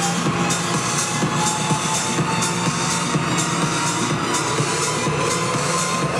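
Electronic dance music with a steady beat, played loud over a club sound system and recorded from the dance floor.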